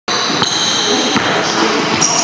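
A basketball bouncing twice on a hardwood gym floor, two sharp knocks about three quarters of a second apart, with voices in the background.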